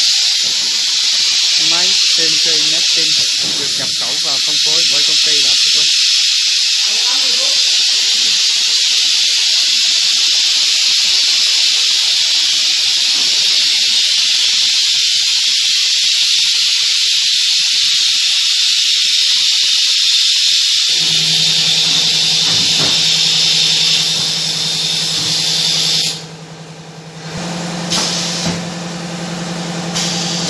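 Three-head CNC nesting router machining a wood panel: a loud, steady hiss from the spindle and cutter, which stops suddenly about 26 seconds in. A steady low machine hum starts a few seconds before the hiss stops.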